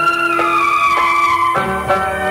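Instrumental devotional kirtan music with no singing: held chord tones under a high melody note that glides slowly downward, then gives way to new notes about one and a half seconds in.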